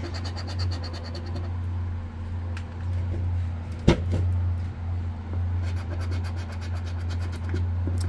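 A coin scraping the latex coating off a scratch-off lottery ticket in quick strokes, at the start and again near the end, with a single sharp knock about halfway through. A steady low machinery hum runs underneath, from construction work nearby.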